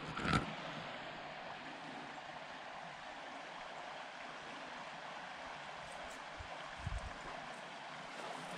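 Steady, even rush of creek water. A brief louder sound at the very start, and a few soft thumps near the end.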